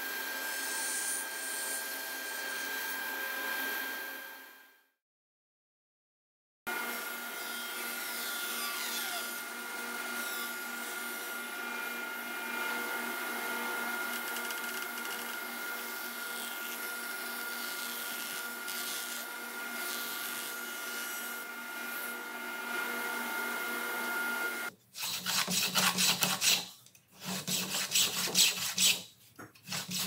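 Table saw running steadily with a constant whine. It cuts to silence for a second and a half about five seconds in, then runs again. Near the end come rhythmic rasping strokes, several a second, as a hand-held wooden dowel jig is pushed back and forth along a thin square wooden strip, shaving it round.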